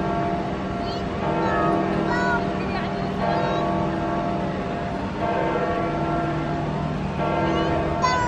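Sustained held chords of several steady tones, each block lasting two to three seconds and then changing, with the voices of people in a crowd over them.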